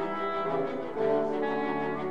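Orchestral background music with brass holding sustained chords, moving to a new chord about a second in.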